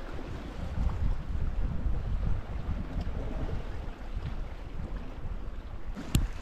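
Wind buffeting the microphone in an uneven low rumble, with sea swell washing against the rocks.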